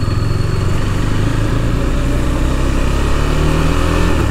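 KTM 390's single-cylinder engine running at low speed on the move, under a steady hiss of wind and road noise. The engine note rises slightly near the end.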